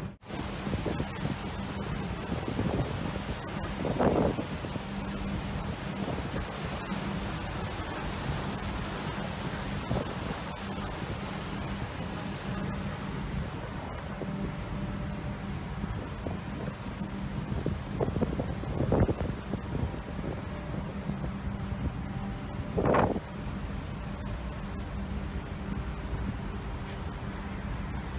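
Wind buffeting the microphone over the steady rush of the sea along the ship's side, with a low, steady hum from the ship underneath. Louder gusts come about four seconds in, around nineteen seconds and near twenty-three seconds.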